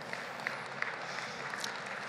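Audience in a large hall applauding quietly, a steady patter with a few separate claps standing out.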